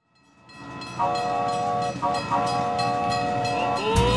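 Steam train sound effect: rhythmic chugging fades in, then a multi-tone locomotive whistle is held for a few seconds with a brief break partway through. A rising slide in pitch begins near the end.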